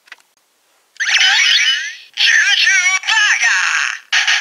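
Electronic sound effects from a Kamen Rider Ex-Aid Juju Burger DX toy. About a second in comes a sweeping electronic flourish, followed by a warbling synthesized voice.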